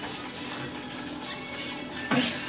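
Butter sizzling in a pan on the stove, a steady hiss: the butter is overheating and starting to burn.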